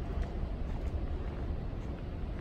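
Steady low rumble of background noise in a large store, with a few faint ticks.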